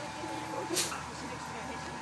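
Blue Bird school bus standing and idling, a low steady engine hum, with a short hiss a little under a second in.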